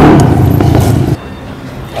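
Loud, steady motor-vehicle engine noise with a low rumble and a faint steady tone above it, cutting off suddenly just over a second in and leaving quieter outdoor background.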